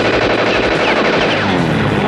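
Rapid machine-gun fire from a light plane strafing the ground, over the drone of the plane's propeller engine, whose pitch falls as it passes low overhead near the end.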